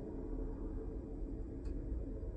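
Steady low hum of a Wrightbus Electroliner electric double-decker powering up in its start sequence, heard from the driver's cab, with a faint click near the end.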